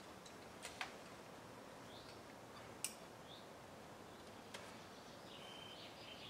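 Near-quiet outdoor ambience with a few sharp clicks, the loudest about three seconds in, and faint short high chirps of birds, one held briefly near the end.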